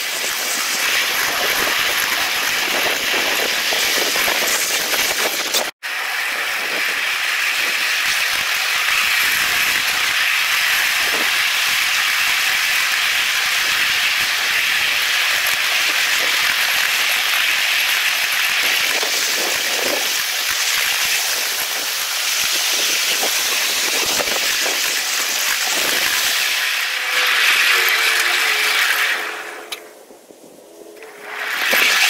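Continuous hissing rush of a ridable miniature train's wheels rolling on the rails, heard from aboard the train and played back at eight times normal speed. It drops out for an instant about six seconds in and falls away just before the end.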